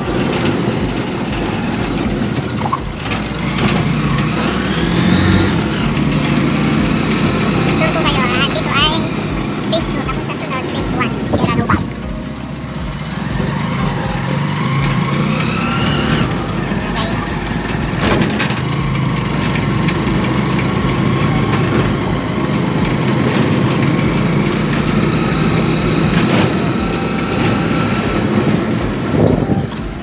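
Small motorcycle engine of a tricycle running as it rides along a street, its pitch rising several times as it speeds up.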